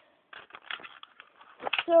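Scattered light clicks and taps of hands handling small plastic toys and the phone, with a few sharper knocks near the end.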